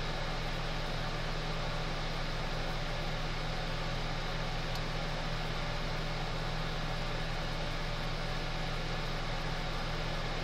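A steady low hum with an even hiss, as from a fan or small motor running, unchanging throughout.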